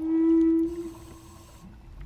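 A wooden Native American-style flute holding one steady low note that swells at the start and fades away after about a second.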